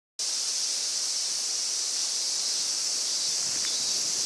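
Steady, high-pitched chorus of insects droning without a break.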